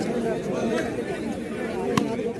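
Many overlapping voices of players and spectators chattering at a floodlit outdoor court, with one sharp smack near the end that stands out as the loudest sound.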